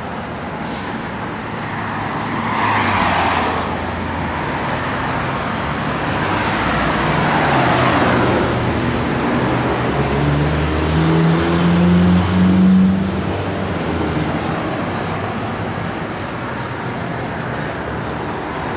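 Road traffic passing: vehicles swish by in the first half, then one vehicle's engine note climbs in steps as it accelerates past the middle and fades.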